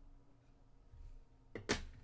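Quiet room tone, then one short knock on the tabletop about three-quarters of the way through, as the encased trading card in its hard plastic holder is set down.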